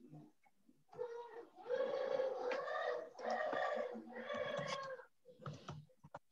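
Three drawn-out, high-pitched, wavering calls, one after another, from about a second in until near the end.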